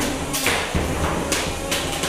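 Several sharp clanging hits as 3 lb combat robots with spinning drum weapons strike each other: a pair about half a second in, then two or three more in the second half, over a steady hum.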